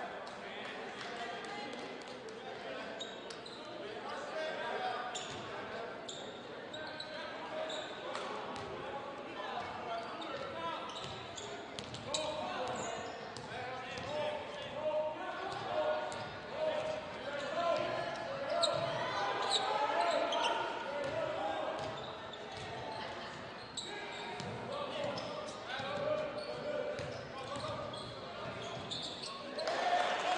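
Basketball being dribbled on a hardwood gym floor, with the crowd's chatter and players' voices in the gymnasium throughout.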